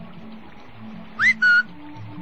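Two quick, loud whistles about a second in, the first sweeping upward, the second a short held note, over a quiet, low, pulsing music bed.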